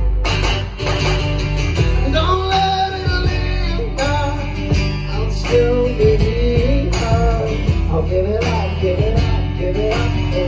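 Live rock band playing a song: strummed acoustic guitar, electric bass and drums keeping a steady beat, with a singer's voice carrying a melody over it from about two seconds in.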